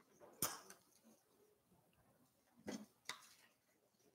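Near silence broken by a few light handling knocks, one about half a second in and two close together near the three-second mark, as a countertop electric grill and its power cord are moved.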